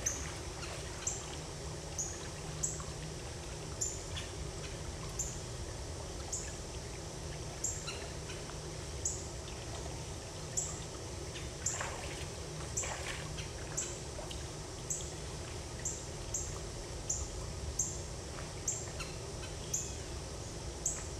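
A short, high-pitched chirp repeated a little more than once a second, over a steady low hum.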